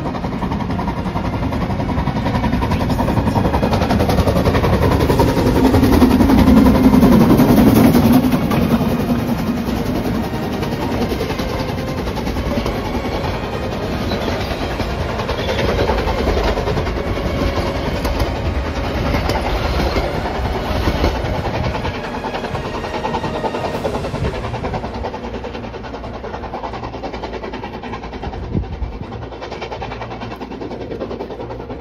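Brocken Railway narrow-gauge steam train passing close by on the Harz line. It is loudest as the locomotive goes by a few seconds in, then the carriages roll past and the sound fades near the end.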